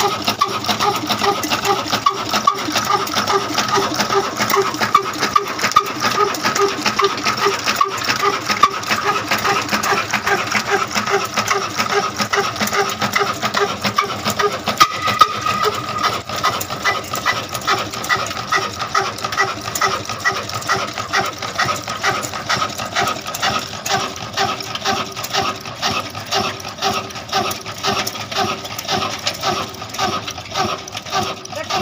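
Old horizontal stationary diesel engine with a large flywheel running under way, with a steady, quick, regular beat.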